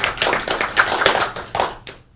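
A small group clapping after a presentation: uneven claps that thin out and die away near the end.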